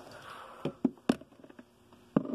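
Handling noise: three quick clicks and knocks in the middle, with faint rustling, as a small lockable box is handled and the phone filming it is moved about.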